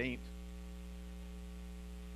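Steady low electrical mains hum, unchanging throughout, with the tail of a man's spoken word at the very start.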